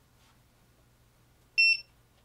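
Yonhan 12/24V smart battery charger giving one short, high-pitched electronic beep about a second and a half in, as it powers up on being connected to the battery.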